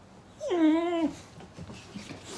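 A husky-type dog gives one short yowling whine, about half a second in: it slides down in pitch, then wavers briefly before stopping.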